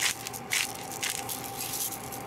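Wire potato masher working through mashed potatoes in a bowl: a few short squishing strokes with light clicks, the last about a second in.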